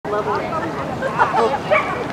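A dog's excited yipping and whining, with people's voices in the background.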